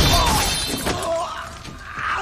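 A shattering crash, loudest at the start and dying away over about a second.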